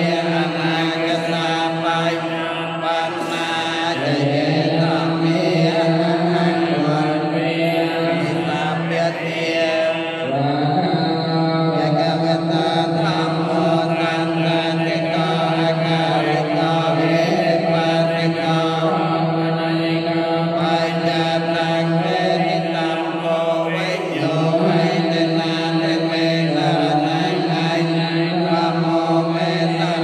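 Buddhist monks chanting together in unison, in long held notes whose pitch shifts a few times.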